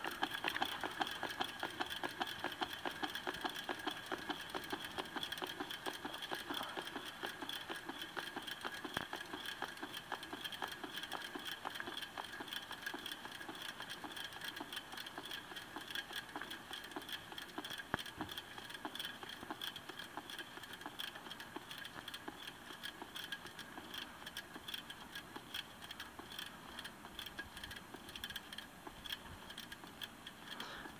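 Bicycle front wheel spinning freely on freshly cleaned, WD-40-lubricated hub bearings: a rapid, even ticking with a faint steady whine, fading slowly as the wheel loses speed.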